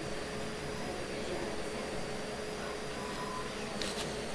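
Steady mechanical hum and hiss with faint, steady high whines, unchanging throughout.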